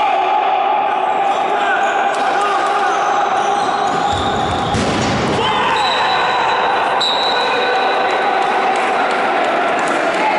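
Echoing sports-hall sound of an indoor futsal match: players' shouts mixed with shoe squeaks on the court and the ball being kicked, with a heavier knock about five seconds in.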